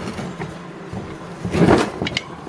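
Brief handling noise at a workbench: a few light clicks, then a short scraping rustle about one and a half seconds in.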